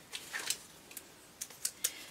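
Hands handling a small skein of yarn and its paper label: a few light, scattered clicks and rustles.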